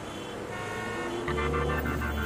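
City traffic noise with a car horn sounding, joined about a second in by a deep, sustained bass note of an intro music sting.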